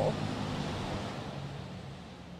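Steady hiss of rain and tyres on a wet road, slowly fading away, with a faint low hum underneath.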